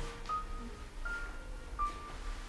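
A few short, steady beep-like tones at slightly different pitches, one after another, each held from a fraction of a second to most of a second, over a faint low hum.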